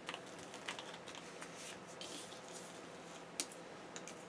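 A hand rubbing and pressing stickers flat on the paper pages of a planner: faint paper rustles and light taps, with one sharper click a little before the end.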